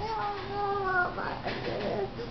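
A young child's high voice holding one long sung note for about a second, sliding slightly down, followed by softer, breathy vocal sounds.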